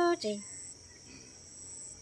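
A woman's held sung note breaks off just after the start, leaving a pause filled by a steady, high insect trill from the surrounding grass.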